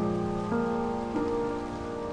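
Sampled grand piano (Spitfire LABS Autograph Grand) playing slow, soft chords: new notes are struck at the start, about half a second in and just after a second in, each left ringing. Under it runs a steady hiss of rain ambience.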